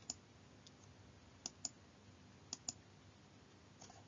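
Faint computer mouse clicks over near-silent room tone, coming in close pairs a few times, advancing slide animations.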